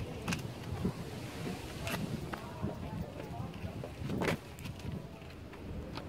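Footsteps and shoe scrapes on rough rock, a scatter of short sharp clicks, over a low rumble of wind on the microphone; a louder rushing scrape about four seconds in.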